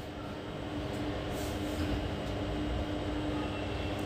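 Steady low background rumble with a faint steady hum, the room's ambient noise picked up through the microphone.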